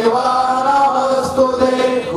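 A man's voice chanting an Ayyappa devotional song into a microphone, holding long, level notes.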